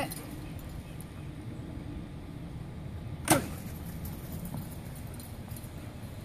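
A plastic ball-launcher stick swung hard once, about three seconds in, giving a single sharp swish as it flings the ball.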